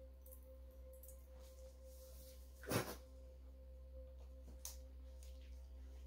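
Faint steady room hum with a thin constant tone, broken by one sharp tap about three seconds in and a lighter one near five seconds.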